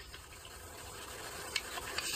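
Faint steady hiss with a soft click near the end.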